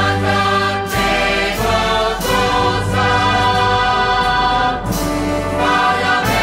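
Spanish wind band (banda de música) playing a Holy Week processional march, with full held chords in the brass and woodwinds that change every second or two. Three percussion strikes come through, about one, two and five seconds in.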